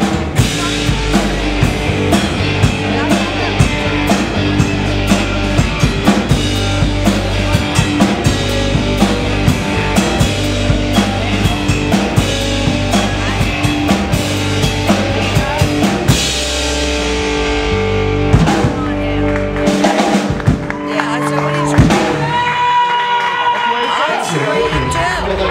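Live rock band playing loudly: a drum kit keeping a steady beat under electric guitars. About two-thirds of the way through the full sound thins out to a few scattered drum hits, and a single high tone is held near the end.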